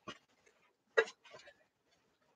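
A few light clicks and taps of stiff plastic sheets being handled, the loudest about a second in.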